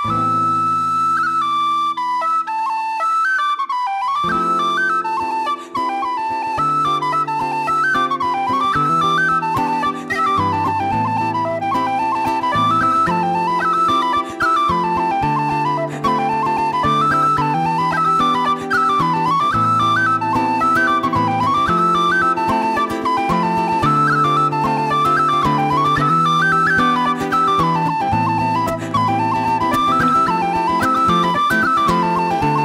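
Tin whistle playing a fast Irish reel melody, with guitar accompaniment coming in about four seconds in and keeping a steady strummed rhythm under it.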